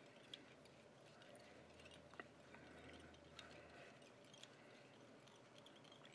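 Near silence: room tone, with a few faint, soft ticks.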